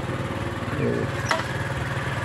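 Small motorcycle engine idling steadily, with one sharp click a little after the middle.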